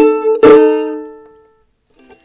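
Ukulele strummed twice, the second strum left to ring and fade away over about a second; the strings are out of tune, so the chord sounds gross.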